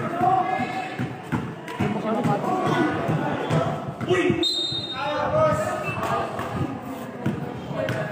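A basketball being dribbled and bouncing on a concrete court, a run of short thuds, with spectators and players talking and calling out over it.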